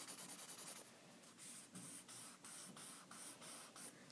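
Blending stump rubbed back and forth on sketchbook paper, shading a pencil drawing: quick, faint scratchy strokes, a short pause about a second in, then steadier strokes about four a second.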